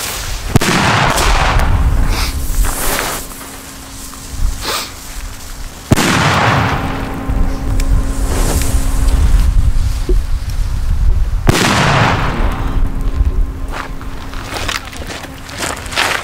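Three very loud bangs from Tropic Exploder 4 P1 firecrackers, each holding 4.5 g of explosive, going off about five and a half seconds apart, each ringing out in a long echo.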